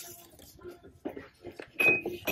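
Boxed glass Christmas ornaments and cardboard boxes being handled on a store shelf: faint scattered knocks and light clinks, with one louder knock near the end.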